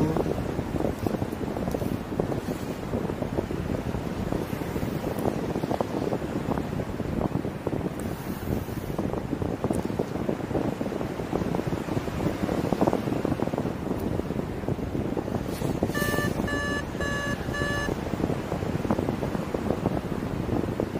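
Steady wind rushing over the microphone in paraglider flight. Near the end there are four short, evenly spaced electronic beeps, all at the same pitch, from the paraglider's variometer, which beeps like this when the glider is climbing in lift.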